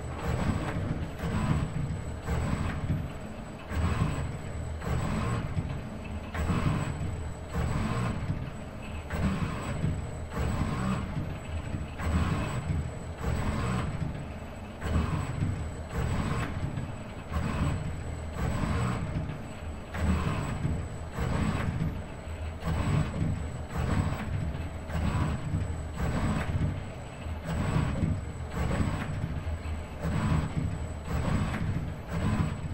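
ABB IRB120 robot arm's motors whirring over a low rumble, pulsing about once a second as it works, with a faint steady high-pitched whine.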